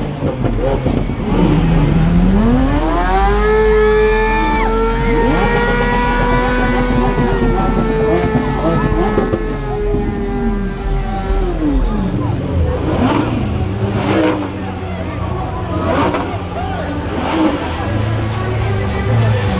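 A supercar engine revved up and held at high revs for about nine seconds, its pitch climbing quickly at first, then steady, then falling away. Shorter revs and the voices of a large crowd follow near the end.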